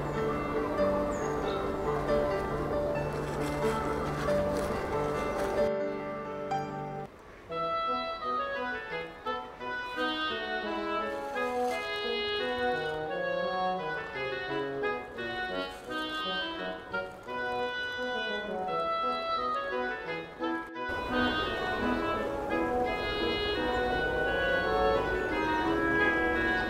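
Instrumental background music: sustained chords, breaking off about six seconds in into a run of short melodic notes, with another abrupt change about three-quarters of the way through.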